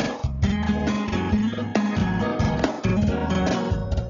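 Instrumental break in a pop-rock song: guitar and a steady bass line carry on without the vocal.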